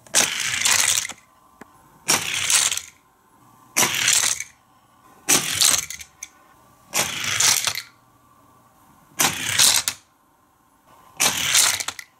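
Hot Wheels die-cast cars running down orange plastic track and clattering into the set, seven short runs about two seconds apart.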